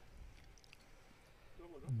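A quiet pause in a small studio room with a few faint clicks, then a faint voice starting to speak near the end.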